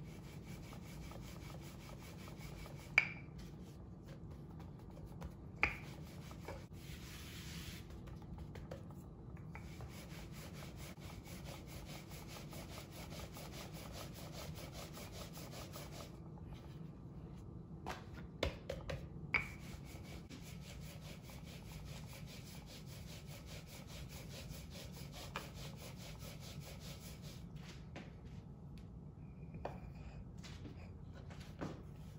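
Wooden rolling pin rolling dough out thin on a floured bamboo cutting board: a steady low rubbing, with a few sharp knocks of the pin against the board, one about three seconds in, one near six seconds, and a quick cluster a little before twenty seconds.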